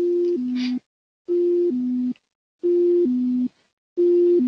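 Garmin GFC 600 autopilot's automatic-disconnect aural alert: a two-note tone, high then low, repeating about every 1.3 seconds. It signals that the autopilot has disengaged itself (AP FAIL) and keeps sounding until the pilot acknowledges it with the AP button or the AP disconnect on the yoke.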